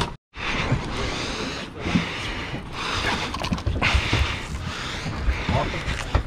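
Steady rushing noise of wind buffeting the microphone and sea around an offshore fishing boat, rising and falling in strength.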